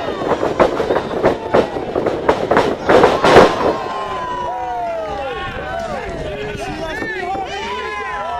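Wrestling ring: a rapid series of thuds and slaps as wrestlers strike each other and hit the canvas, the loudest crash about three and a half seconds in. From about four seconds in, voices yell with rising and falling pitch.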